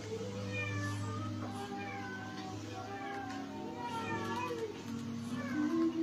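Acoustic guitar played softly, with held notes ringing, and several short gliding high-pitched cries over it.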